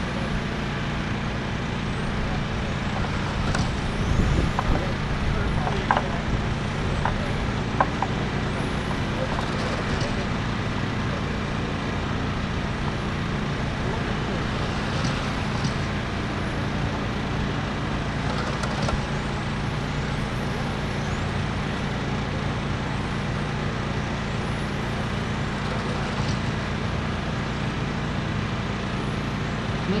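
Electric 1/10-scale RC touring cars with 17.5-turn brushless motors racing, their faint high whine rising and falling as they lap over a steady background noise. A few sharp clicks come between about four and eight seconds in.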